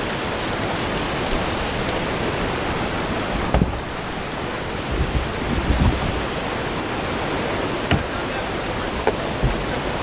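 Steady rush of whitewater rapids pouring over rocks, with a few dull thumps from about a third of the way in.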